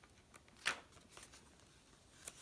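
Faint rustling and light scraping of a cardstock library card handled against a paper journal page and its tuck pocket, with one sharper paper stroke about a third of the way in.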